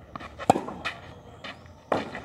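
Tennis ball being hit back and forth in a clay-court rally: sharp pops of the ball, the loudest about halfway in and another near the end, with fainter taps between.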